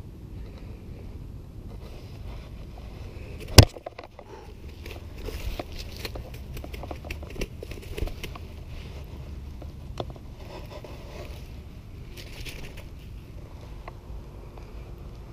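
A peacock bass being handled and flopping on grass, with rustling and light crackling handling noise. One sharp knock comes about three and a half seconds in.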